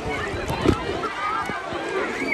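Children's and adults' voices calling and chattering across a busy swimming pool, over the noise of water being splashed, with a short knock or slap about two-thirds of a second in.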